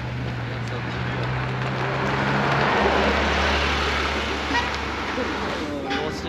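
Sports cars driving past. A steady engine note swells to its loudest about halfway through, then drops to a deeper engine tone.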